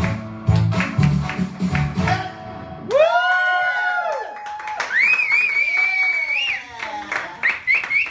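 Karaoke backing track with a steady beat and live singing, stopping abruptly about three seconds in. Long high whoops follow, then a sustained whistle, short whistled chirps and some clapping.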